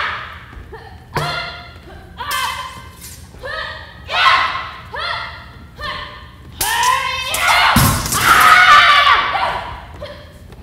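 Stage sword-and-shield fight: short shouted grunts of effort about once a second with the strikes, and thuds of blows on shields. About seven seconds in comes a longer, louder yell with a heavy thud.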